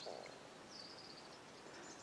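Near silence: faint outdoor background noise, with a faint, high-pitched bird call lasting under a second in the middle.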